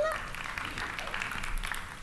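Audience applauding in a hall, a steady patter of many hands.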